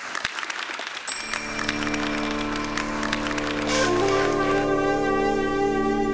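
A group of people clapping, the applause thinning out over the first few seconds. Music with long held notes comes in about a second in and builds over the applause.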